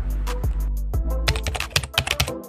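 Keyboard-typing sound effect, a quick run of clicks, over background music with a steady low bass.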